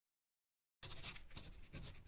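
A quill pen scratching across paper in quick, irregular strokes, starting abruptly about a second in after silence.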